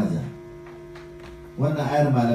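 A man reciting a Quranic verse in a melodic chant. He breaks off briefly into a pause filled with a steady electrical hum, then resumes about one and a half seconds in.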